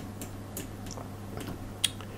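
A few scattered light clicks from a computer mouse and keyboard over a steady low hum.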